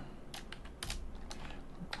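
Computer keyboard typing: a few separate keystrokes, irregularly spaced.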